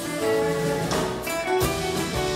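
Live band playing an instrumental piece: held melody notes over acoustic guitar and keyboard, with a couple of sharp percussion hits in the second half.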